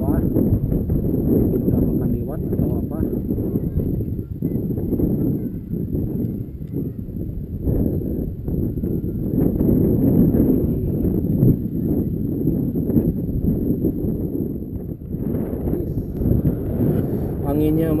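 Wind buffeting the camera microphone on an exposed hilltop: a loud, uneven low rumble, with a voice near the end.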